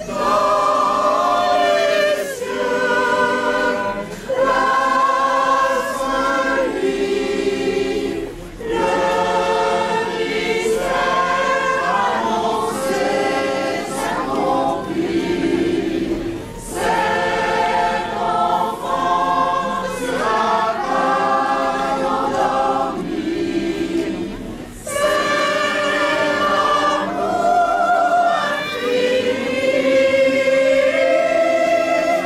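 A choir singing, phrase after phrase, with brief pauses for breath between the lines.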